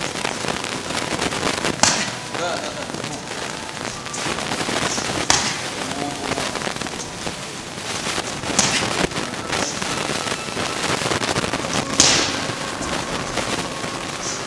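Boxing gloves punching focus mitts in sharp smacks a few seconds apart, the loudest about twelve seconds in. Steady gym background noise runs under them.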